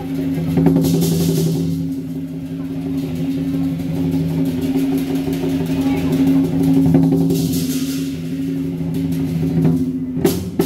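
Lion dance percussion: a large drum held in a continuous roll, with a steady low ringing tone underneath. A cymbal wash swells about a second in and again near eight seconds.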